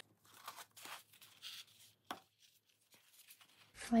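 Faint rustling and scraping as a strip of stamped cheesecloth is threaded through a punched slot in a paper tag, with a single small click about two seconds in.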